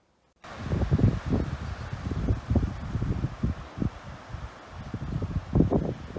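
Wind buffeting the microphone outdoors, in irregular low gusts that start suddenly about half a second in after near silence.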